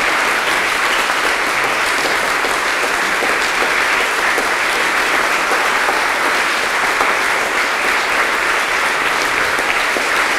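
A large standing audience applauding steadily, a dense continuous clatter of many hands clapping in a hall.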